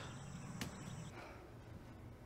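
Faint background ambience with a high, steady whine that cuts off about a second in, and one sharp click just after half a second in.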